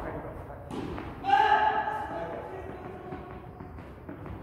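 A padel ball thuds as it is bounced on the court before a serve. A voice calls out a drawn-out word for about a second, starting just over a second in.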